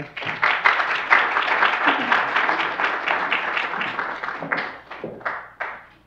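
Audience applauding: dense clapping that thins out to a few scattered last claps near the end and stops.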